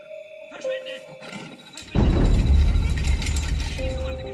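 Lion growling loudly and roughly close to the microphone, with a deep rumble. It starts suddenly about halfway through and carries on to the end.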